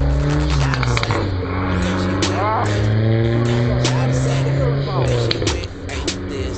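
Car engine pulling away and accelerating, its pitch rising steadily for about four seconds before fading, with voices briefly over it.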